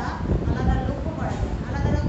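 A woman's voice speaking in an ongoing lesson, over a steady low rumble.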